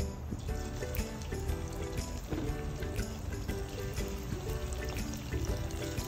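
Background music over the sizzle of marinated chicken pieces frying in hot oil in a steel kadai as they are added.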